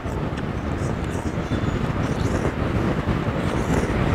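Steady low background rumble, with faint soft sounds of a man eating pho noodles.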